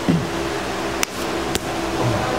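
A steady background hum, like ventilation, fills the room. Two sharp clicks come about a second and a second and a half in.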